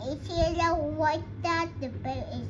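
A small girl's voice in sing-song, holding high drawn-out notes in a few short phrases.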